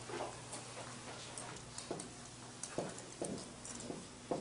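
Dry-erase marker writing on a whiteboard: a few short, sharp taps and strokes in the second half.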